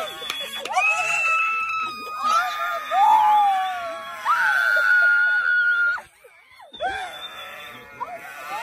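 Several people screaming with excitement in long, high-pitched, overlapping shrieks. The screams break off suddenly about six seconds in, and voices start again near the end.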